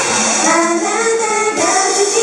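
A group of young women singing a J-pop idol song together into microphones over a recorded pop backing track.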